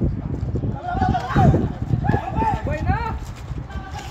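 Players shouting calls to each other across an outdoor basketball court, heard from a distance over a low rumble of wind on the microphone.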